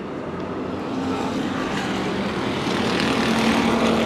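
A pack of bomber-class stock cars running their engines hard around an oval track, a steady blended drone that slowly builds in loudness as the field comes around.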